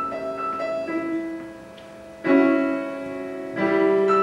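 Piano playing a figure of repeated notes, then a loud chord struck a little past halfway and another near the end, each ringing on and fading.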